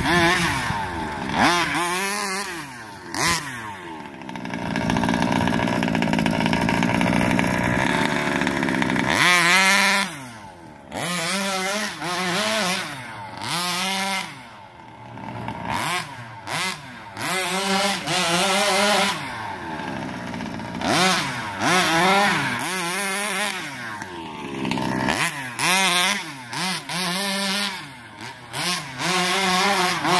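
Rovan 36cc two-stroke engine of a 1/5-scale RC car revving under throttle: held high for several seconds, then blipped in short bursts, its pitch rising and falling with each burst and dropping back between them.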